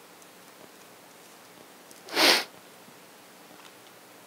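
A single short sniff, about two seconds in, against quiet room tone.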